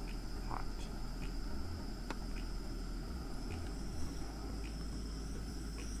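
A metal spoon stirring gumbo in a metal camp pot, giving a few faint light clinks, over a steady high-pitched trill and a constant low rumble.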